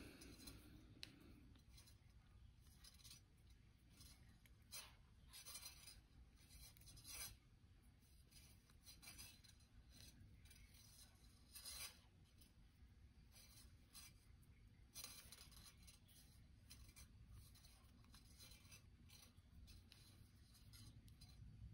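Faint scratchy rubbing of 26-gauge copper wire being wrapped by hand around heavier 20-gauge copper wire, in short irregular strokes against a low room hum.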